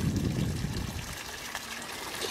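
Water trickling from a garden pond's filter outlet pipe, a steady splashing that fades slightly.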